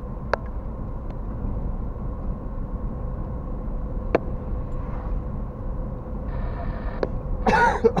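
Road and engine noise from inside a moving car, a steady low rumble with a faint steady whine, broken by a few sharp clicks. Near the end a person gives a short laugh.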